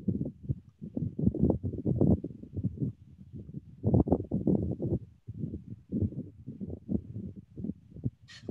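Rapid, uneven tapping on a computer keyboard, several keystrokes a second, with short pauses about three and five seconds in, as someone types and clicks while searching for a setting.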